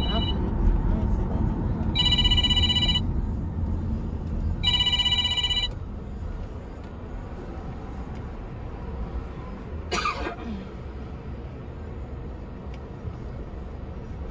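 Two electronic rings, each about a second long and about three seconds apart, over the steady low road noise inside a moving car.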